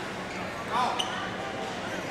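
Badminton in an indoor hall: a racket strikes the shuttlecock with one sharp click about a second in, just after a brief squeal, over the steady chatter of people in the hall.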